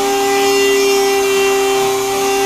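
A variable-speed rotary tool running at high speed, spinning the rotor of a homemade bucking-coil generator. It makes a loud, steady whine made of several tones, with no change in pitch.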